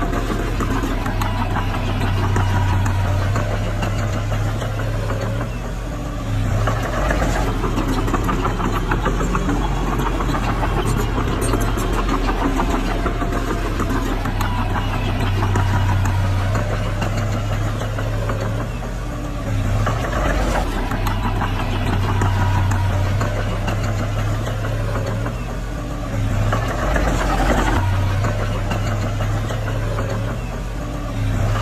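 Small crawler bulldozer's diesel engine running under load as it pushes soil, with a dense clatter, its note and loudness shifting a few times as the load changes.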